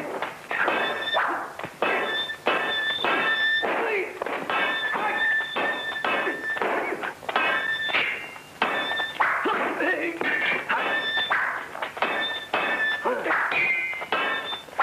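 Sword fight sound effects: a rapid run of sharp metallic clangs, two or three a second, each ringing briefly at the same bright pitch, mixed with dull thuds of blows.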